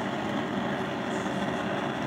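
Gas stove burner flame burning with a steady, even rushing noise, with a faint steady tone underneath.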